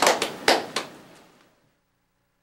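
Audience applauding, the claps thinning out and stopping about a second in, then silence.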